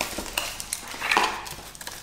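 Small cardboard box being opened by hand and a plastic skincare bottle slid out of it: light scrapes and clicks of card, with one short louder sound just over a second in.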